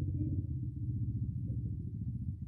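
A steady low rumble with a fast flutter in it and nothing much higher up.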